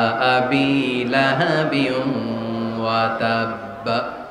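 A man's voice chanting a waz sermon in its drawn-out sung style into microphones, with long held notes that step up and down in pitch. The chanting stops just before the end.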